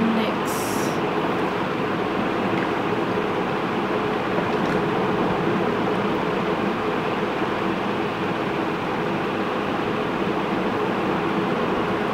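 Steady hum and rush of room air conditioning, with a faint low drone in it. A brief high hiss comes just under a second in.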